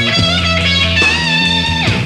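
Live grunge rock band playing an instrumental passage: distorted electric guitar holding long notes over bass and drums, with a note sliding down in pitch near the end.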